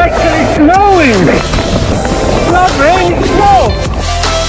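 A man giving several drawn-out, wordless yells that swoop up and down in pitch, over the rushing noise of wind and choppy water on an action camera's microphone.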